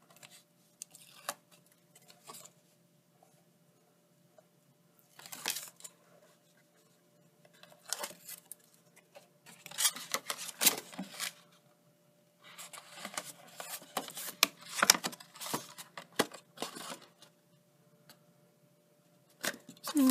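Black cardstock being folded and pressed together by hand as the box panels are stuck onto double-sided tape: irregular bursts of rustling, crackling and light taps with quiet gaps between.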